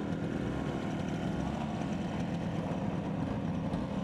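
Historic motorcycle engine idling steadily.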